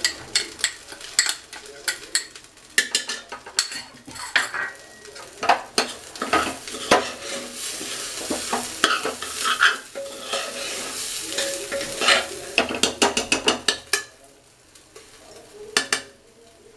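Metal spoon stirring rice grains in a pressure cooker, with repeated scrapes and clicks against the pan over a sizzle as the rice roasts in hot ghee on low flame. The stirring stops about two seconds before the end.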